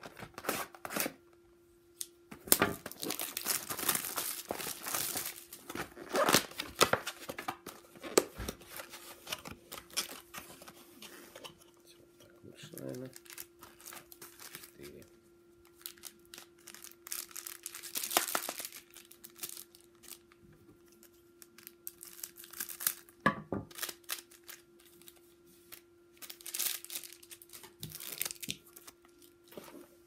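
Plastic wrap and card-pack wrappers being cut with scissors and torn open, crinkling, in several bursts of a few seconds separated by pauses.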